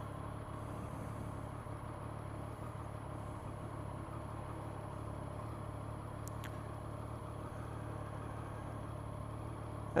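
Triumph Street Triple's three-cylinder engine running steadily at low speed, a constant hum with no change in revs, and a faint click about six and a half seconds in.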